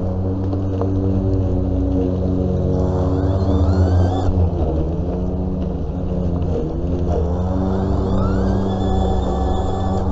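Battery-powered walk-behind lawn mower running under load, a steady electric motor hum with a whine that rises in pitch and levels off twice, about three seconds in and again about eight seconds in.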